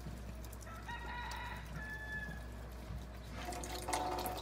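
A domestic fowl calling: a short high-pitched call about a second in, followed by a thinner whistling note, then another call starting near the end.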